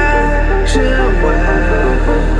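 Melodic techno / progressive house music: a steady deep synth bass under layered, sustained synth chords and a stepping melody, with a short high hiss about two-thirds of a second in.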